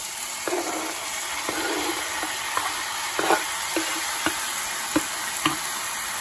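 Diced tomatoes, chili pepper and garlic sizzling steadily in hot oil with frying onions in a pan, with scattered short knocks and scrapes of a knife and wooden spoon against the cutting board and pan as they are pushed in and stirred.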